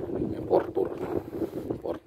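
Wind buffeting the microphone, a ragged low rumble, with a man's voice speaking briefly, partly covered by it.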